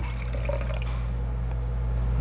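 A thin stream of water poured from the spout of a glazed ceramic pouring bowl into a plastic beaker, splashing steadily into the water below and getting a little louder near the end. This is a test pour from a spout with a sharpened lip, made to pour without dribbling.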